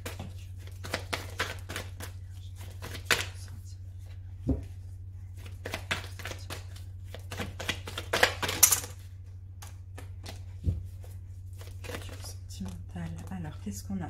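A tarot deck being shuffled and handled: a run of light card clicks and snaps, with a louder riffling rustle a little past the middle and two dull thumps on the table. A steady low hum lies underneath.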